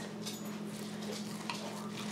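Steel knife and fork cutting a cooked steak on a ceramic plate, faint, with one light click of cutlery on the plate about one and a half seconds in, over a steady low hum.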